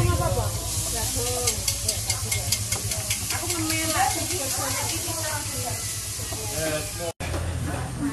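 Food frying in a wok: a sizzling hiss with a run of quick spatula taps during the first few seconds, under low background voices.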